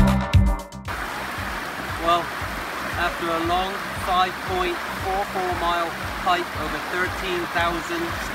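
Electronic music cuts off suddenly about a second in. It gives way to a shallow mountain creek running steadily over rocks, with voices talking over the water.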